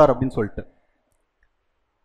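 A man speaking in Tamil, breaking off about two-thirds of a second in, followed by silence.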